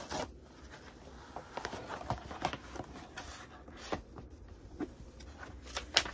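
A mail package being opened by hand: scattered rustles, scrapes and short tearing sounds of packaging.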